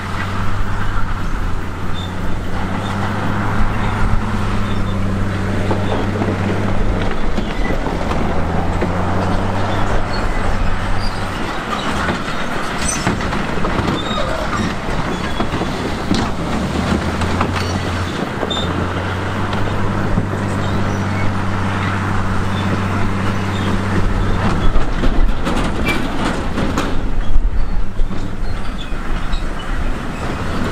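Crawler bulldozer (Komatsu D58E) working under load: a steady low diesel drone that dips and changes pitch several times as the machine pushes and reverses, over the rattle and clank of steel tracks. A cluster of sharp knocks comes near the end.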